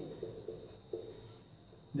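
A marker pen writing on a whiteboard: a few short, faint squeaks in the first second. Under it is a steady high-pitched whine.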